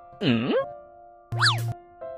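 Two cartoon-style comedy sound effects over background music with held notes. A boing-like glide swoops down and back up about a quarter second in, and a quick whistle-like glide rises and falls about a second and a half in.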